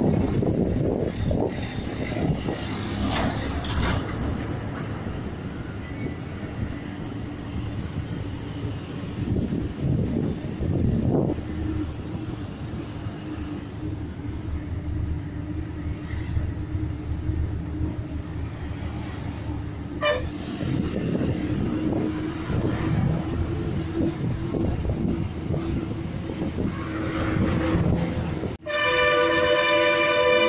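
Bus engine and road rumble heard inside the cabin of a KSRTC bus on a winding ghat road, with a steady engine hum coming in about a third of the way through. Near the end a loud horn sounds suddenly.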